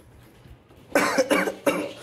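A man coughing: about three harsh coughs in quick succession, starting about a second in.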